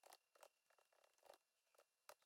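Near silence, with very faint scattered clicks of keyboard typing.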